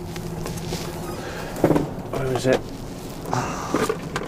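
Lorry's diesel engine idling inside the cab, a steady low hum, with knocks, rustling and a few grunts as the driver reaches down to work on his squeaking seat.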